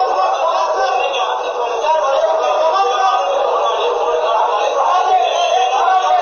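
Several people's voices talking over one another in a continuous, overlapping jumble.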